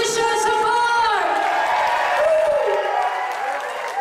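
A voice holding a long high note for about a second and then sliding down, followed by a shorter, lower falling note a little after two seconds in, over crowd noise in the hall.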